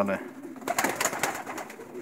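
Domestic pigeons cooing in the background, with a few brief, faint clicks about a second in.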